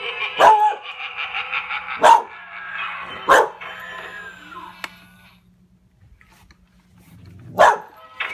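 Dog barking four times, three barks in the first three and a half seconds and one more near the end, barking at a clown figure it dislikes. Electronic music with singing plays under the first barks and stops about five seconds in.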